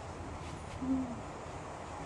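A single short, low hum from a girl's voice, dipping slightly in pitch just under a second in, over faint background hiss.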